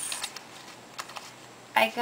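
Small card-backed plastic blister packs of lip cream clicking and rustling against each other as they are handled, with a couple of light clicks about a second in.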